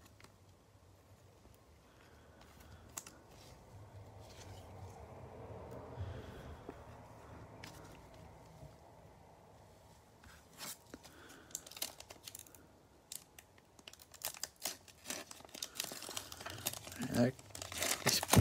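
A trading-card pack's wrapper crinkling and being torn open by hand. Sharp crackles come more and more often over the last few seconds, after quieter handling of a card in a plastic sleeve.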